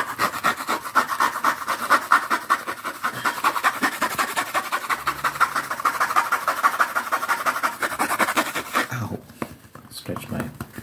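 Red fabric lint brush scrubbed fast and hard against the microphone, a rapid, even run of scratchy brushing strokes that stops about nine seconds in.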